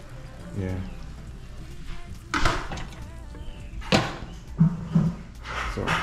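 Sharp metal knocks of a lid and fork on a stainless steel frying pan as the pan is covered, the loudest about two and a half and four seconds in.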